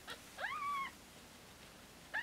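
A newborn Himalayan kitten, under two days old, gives one short, high mew about half a second in. The mew rises sharply in pitch, then holds briefly.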